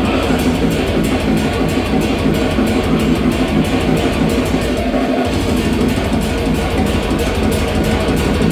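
Heavy metal band playing live and loud: distorted electric guitars, bass and fast, dense drumming. The low end drops out for a moment about five seconds in.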